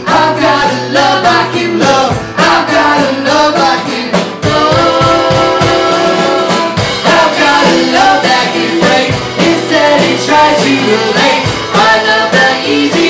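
Live indie-folk song: an acoustic-electric guitar strummed with singing over it, and a steady beat from a homemade percussion kit of upturned plastic paint buckets and cymbals. One sung note is held for about two seconds midway.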